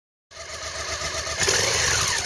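Motorcycle engine sound effect: it starts about a third of a second in, swells to its loudest about one and a half seconds in, and its pitch then begins to fall.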